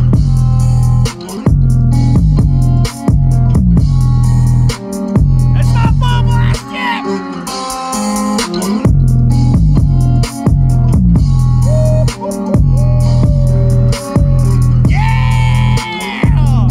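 Loud, bass-heavy music playing from a DiamondBoxx XL Bluetooth speaker with six woofers. Long, heavy bass notes are broken by short gaps every second or two. Midway the bass drops out for about two seconds while higher sliding sounds play, then comes back in.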